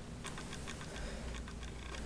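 A few faint, irregular small clicks from handling a plastic lip lacquer tube and its doe-foot applicator wand, over a low steady room hum.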